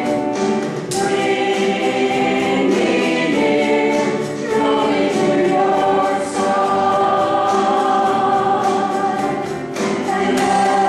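Church praise team singing a contemporary worship song in harmony, with piano accompaniment and drums.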